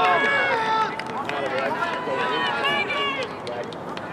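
Several voices shouting and calling out across an open field, overlapping, with no clear words.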